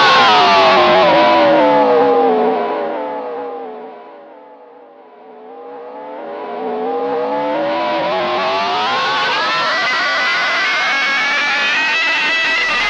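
Ibanez PGM electric guitar holding one sustained, distorted note whose pitch dives slowly and fades over about five seconds, then climbs back up and swells again to full level: a whammy-style pitch sweep.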